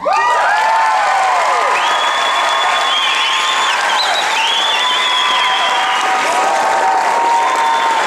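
Audience applauding and cheering with many high whoops and screams, starting suddenly as the song ends.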